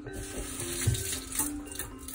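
Curry sauce poured from a ladle and splashing onto a plate, with the loudest splash and a soft thump about a second in. Soft mallet-percussion background music plays underneath.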